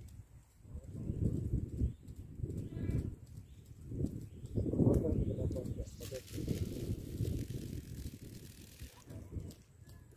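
Handline being cast from a hand-held spool: after the throw, the line hisses off the spool for about three seconds, over an uneven low rumble.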